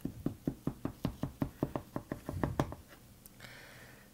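Butter knife chopping down through baked cheesecake squares and knocking against a metal baking pan in quick strokes, about six a second, stopping a little before three seconds in.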